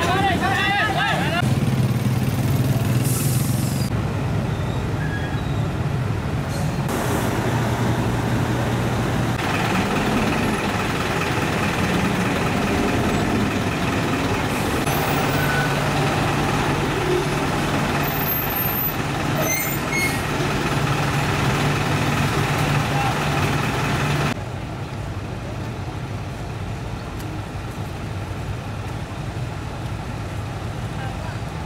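Truck engines idling in stalled traffic: a steady low hum that shifts at each cut, with a voice briefly at the start.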